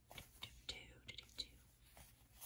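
Faint rustling and light taps of a small linen fabric piece being picked up and flipped over on notebook paper.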